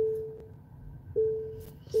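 Car warning chime: a single-pitch electronic ding repeating about once a second, three times, each starting sharply and fading away.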